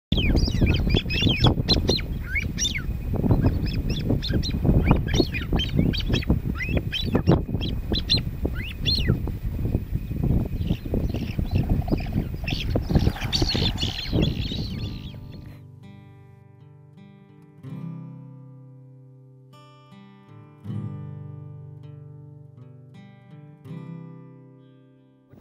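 A covey of grey-winged francolins (greywing partridges) calling, many short high squealing calls over wind noise. About fifteen seconds in the calls and wind fade out and slow plucked guitar notes take over, each ringing and dying away.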